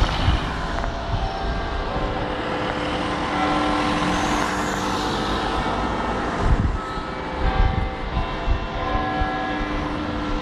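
City road traffic: vehicles driving past on the road close by, with a steady engine hum and a few louder passes about six to eight seconds in.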